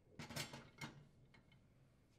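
Faint clinks and clicks of a glass microwave turntable tray being set down and seated on its roller support and drive coupling: a quick cluster of light knocks in the first second, then a couple of fainter ticks.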